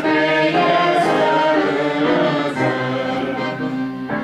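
A woman and a man singing a hymn together, holding sustained notes that move step by step, over a steady held instrumental accompaniment.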